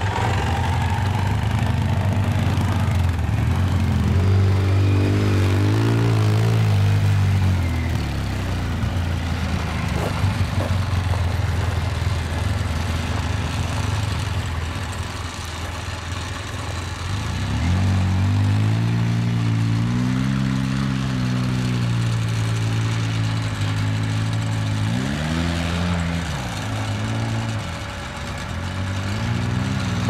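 Off-road vehicle engines running: a steady low engine drone throughout, with an ATV engine revving up and down a few seconds in and again from about the middle to near the end.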